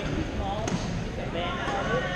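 A badminton racket hitting a shuttlecock with one sharp crack a little after a third of the way in, over the reverberant din of a busy sports hall with voices.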